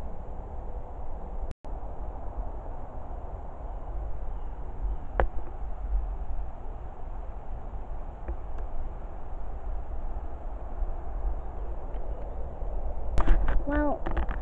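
Steady rustling and low rumble from a handheld camera being carried and moved through long grass and bracken. The sound cuts out for a moment about one and a half seconds in, and there is a single sharp click a little after five seconds. A woman starts talking near the end.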